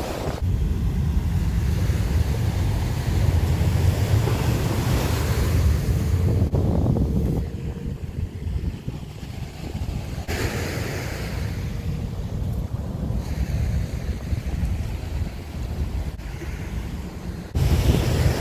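Wind buffeting the microphone over the steady wash of surf on a sandy beach. The wind rumble is strong for about the first seven seconds, then eases.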